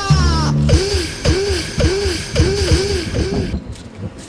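Short music jingle: a falling slide over deep bass, then a bouncy run of arching notes about twice a second. It stops about three and a half seconds in.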